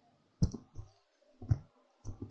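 Two sharp clicks about a second apart, each followed by a fainter tap.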